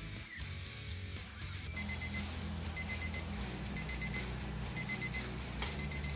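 Digital probe thermometer's alarm beeping in groups of four quick high beeps, about once a second, starting about two seconds in. It signals that the dye bath has reached its set temperature, about 200 °F for wool. Background music plays underneath.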